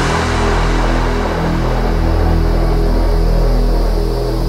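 Dubstep track in a sparse breakdown: sustained low bass notes swelling and fading slowly, with no drums.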